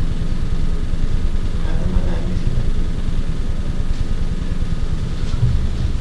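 A steady low rumble with no clear rise or fall.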